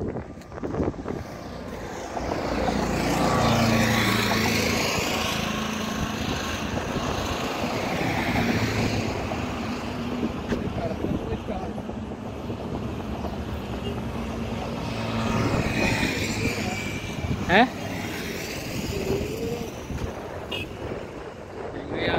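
Highway traffic: vehicles passing with a steady low hum and road noise, swelling loudest twice, a few seconds in and again about two-thirds of the way through.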